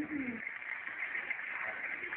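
Studio audience applauding. A voice trails off with a falling pitch in the first half second.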